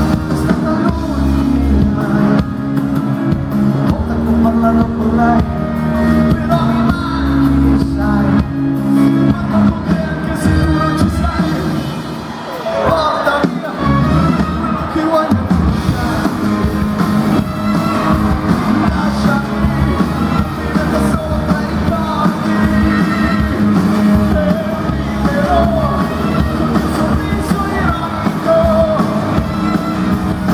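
Live pop-rock band playing, with a male lead vocal over electric guitar and the band, heard loud from the audience in an arena. It eases off briefly about twelve seconds in, then carries on.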